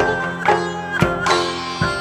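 Live ensemble music led by a sitar: sharp plucked notes about twice a second over a steady ringing drone, with geomungo zithers among the accompaniment.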